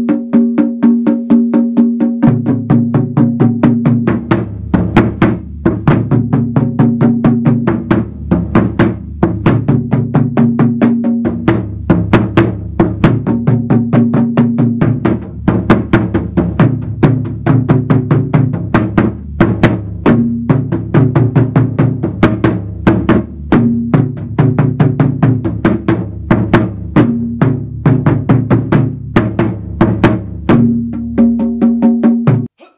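Japanese taiko drums struck with wooden sticks in a fast, driving rhythm, loud and continuous. One drum keeps a steady support rhythm while the other plays call-and-answer phrases against it, and a deeper drum comes in about two seconds in.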